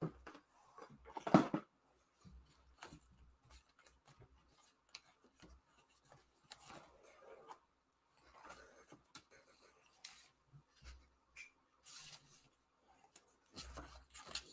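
Craft supplies being handled on a tabletop: a sharp knock about a second in, then scattered light rustles and clicks of paper and card being moved and rummaged through.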